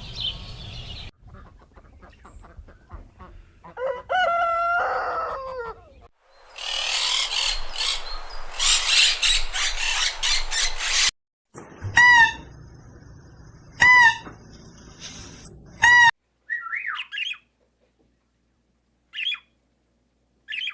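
A string of separate animal calls cut one after another: a rooster crowing about four seconds in, then a loud noisy stretch, then three loud short calls about two seconds apart, then brief parakeet chirps near the end.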